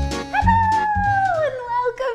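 Upbeat intro jingle with a bass beat that stops about half a second in. It is followed by one long, high-pitched vocal call that slides slowly downward in pitch for about a second and a half.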